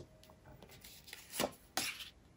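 Tarot cards being handled and laid on a table: a soft tap about one and a half seconds in, then a brief slide of card on the surface.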